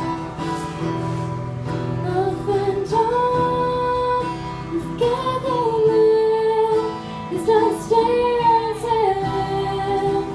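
A woman singing long, held notes over a strummed acoustic guitar in a live indie-folk song, her voice coming in about two seconds in. Recorded through a phone's microphone.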